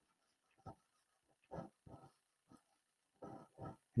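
Faint pencil strokes on paper while sketching: a few short scratches with pauses between them.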